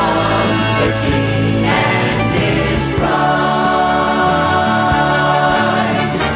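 Gospel vocal group singing with instrumental accompaniment, settling into long held notes about halfway through.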